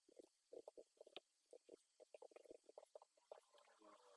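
Very faint computer-keyboard typing: a quick, irregular run of small keystroke clicks.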